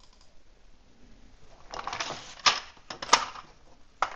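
Clicks and taps at a computer: a brief rustle, then a few sharp clicks in the second half, the two loudest about two-thirds of a second apart.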